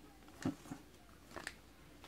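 Faint handling of trading cards: a few short, light ticks and rustles as the cards are slid and swapped in the hand.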